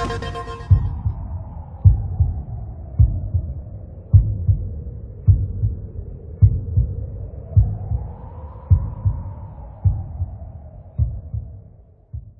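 Soundtrack of a closing logo animation: slow, heartbeat-like low thumps, about one a second, under a soft drone that rises in pitch and swells about two thirds of the way through, then sinks. The whole thing fades out at the end.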